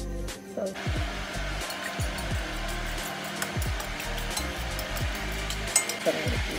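Fork beating eggs in a ceramic bowl: a fast, steady swishing with faint clicks that starts about a second in, over background music with a deep bass that slides down in pitch.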